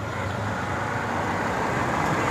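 Road traffic noise: a motor vehicle passing on the street, its steady rumble slowly growing louder.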